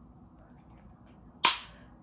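Quiet room tone, then one sharp click about one and a half seconds in that dies away quickly.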